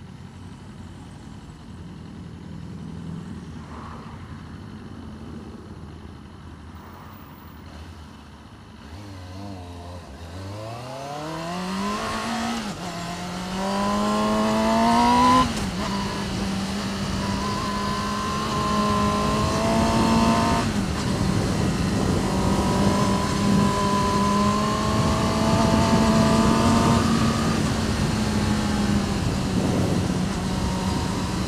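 Motorcycle engine ticking over at a stop, then pulling away about ten seconds in: the revs climb, drop at an upshift, climb again and drop at a second upshift. It then settles into a steady cruise with wind noise on the microphone.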